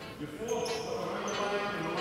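Basketballs bouncing on a sports hall floor, with voices in the hall.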